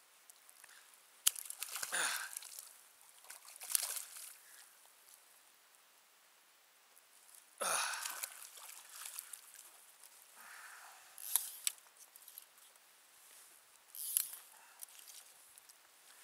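Water splashing and sloshing close by in irregular short bursts, about five times, a few of them with a quick downward swish.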